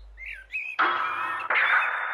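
Outdoor ambience with birds chirping: a few short rising and falling chirps, then two stretches of steady background hiss with chirps in it, each starting abruptly.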